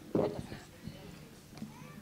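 A woman's voice says a single drawn-out 'bon' through a microphone, followed by quiet room sound with faint scattered movement noises.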